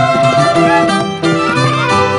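Andean folk music: a violin melody over plucked string accompaniment, with a brief dip about a second in.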